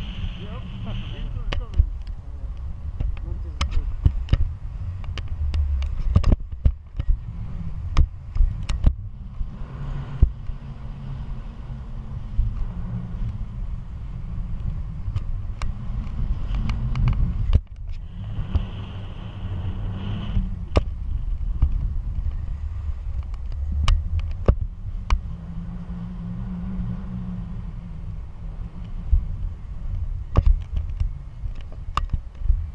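Wind from the flight buffeting the camera microphone on a tandem paraglider: a steady low rumble with scattered sharp clicks.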